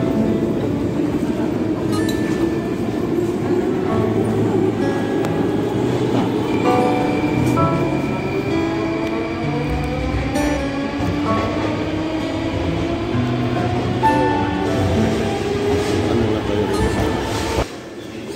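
Background music with short held notes laid over the running noise of a Moscow Metro train. Both stop suddenly just before the end.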